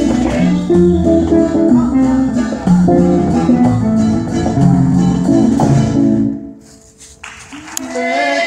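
A mariachi and jazz band playing: plucked guitars and bass over conga drums. About six seconds in the music drops away, and sustained notes begin just before the end.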